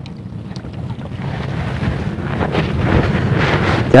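Wind buffeting the microphone: a rushing noise that grows steadily stronger.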